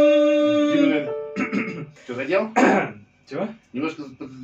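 A held sung note over sustained electronic keyboard notes ends about a second in. It is followed by a few seconds of coughing and throat clearing.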